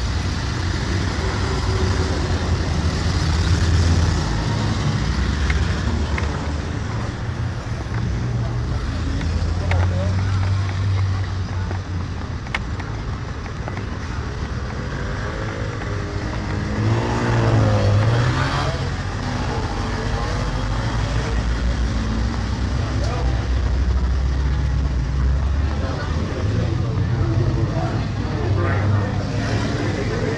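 Road traffic noise, a steady low rumble, with people's voices mixed in; one voice stands out a little past the middle.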